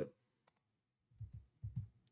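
A single computer mouse click about half a second in, switching to another program window, followed by a few soft, low thumps against a quiet background.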